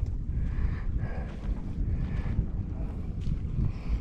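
Wind buffeting the camera microphone: an uneven low rumble that rises and falls, with faint shoreline water sounds under it.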